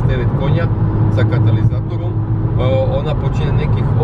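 Steady low drone of engine and road noise inside a Volkswagen Golf 5 GTI cruising at motorway speed. Its 2.0-litre turbocharged four-cylinder is tuned with a downpipe and remapped software.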